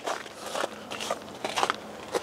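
Footsteps crunching on packed snow: a few short, irregular crunches.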